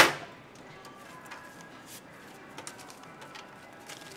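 Cash register drawer springing open with one sharp metallic clang, then a few faint clicks over quiet room tone.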